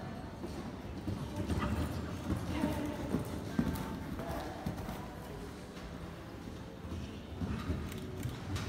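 A horse cantering on sand arena footing, its hoofbeats loudest as it passes about one to four seconds in.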